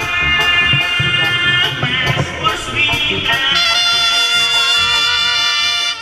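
Technobanda group playing live, with the brass section holding sustained notes early on and a long held chord in the second half that cuts off sharply, over electric bass.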